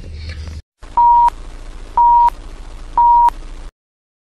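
Three short electronic beeps on one tone, evenly spaced about a second apart, over a low rumble.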